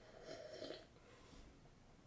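Near silence, with a faint sip of beer from a glass in about the first second.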